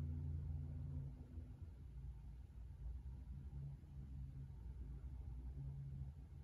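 Quiet room tone: a faint, steady low hum with nothing else happening.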